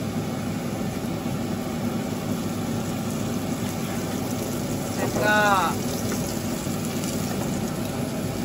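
Gyoza sizzling in a frying pan in freshly added sesame oil, after their steaming water has been poured off: the crisping stage of pan-fried dumplings. A steady frying sound with no break.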